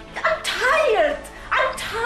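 A woman's raised, high-pitched voice shouting in two loud outbursts.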